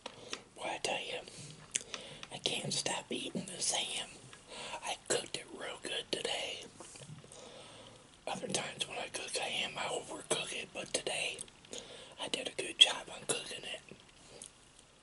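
A man whispering close to the microphone in two long stretches, with a short pause about seven seconds in and sharp clicks scattered through it.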